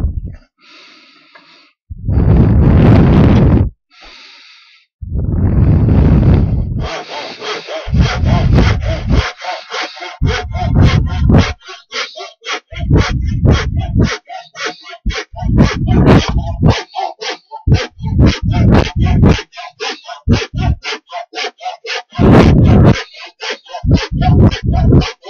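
Hand saw cutting through a block of wood held in a vise, in back-and-forth strokes: a few long, slow strokes at first, then quicker, steady strokes from about seven seconds in.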